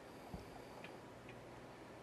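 Near silence: faint room tone with a soft low thump about a third of a second in, then two faint short ticks.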